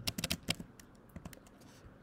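Computer keyboard typing: a quick run of key clicks in the first half second, then a few scattered keystrokes that stop after about a second and a half.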